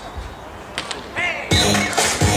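Two sharp slaps of a volleyball being struck just under a second in, a short shout, then loud music starts suddenly over the venue's loudspeakers about one and a half seconds in.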